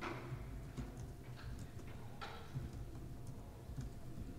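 Faint, irregular clicks of a MacBook Pro's laptop keys being typed, picked up by a podium microphone over a low steady hum.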